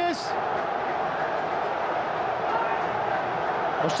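Large football stadium crowd cheering after a home goal, a steady wash of crowd noise.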